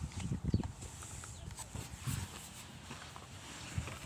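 Low, irregular thumps and rustling from a tablet being handled and moved against clothing, in a cluster in the first second and then a few scattered knocks.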